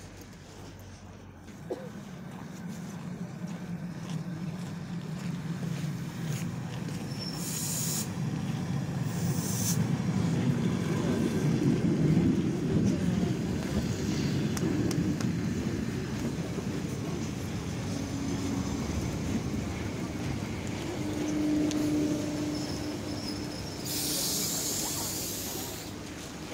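Six-car ER9M electric multiple unit pulling into the platform: its running rumble builds over the first few seconds, peaks about halfway, then eases as it slows, with a steady whine from the train in the later part as it brakes. Short hisses sound a few times, with a longer hiss near the end as it comes to a stop.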